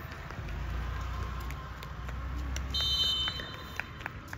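A referee's whistle blown in one steady, shrill note lasting just over a second, starting near the three-second mark. It sounds over a low rumble.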